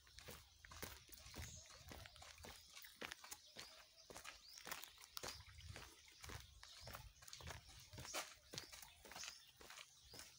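Faint, irregular footsteps and crackling of dry ground and palm litter underfoot, with a few sharper clicks.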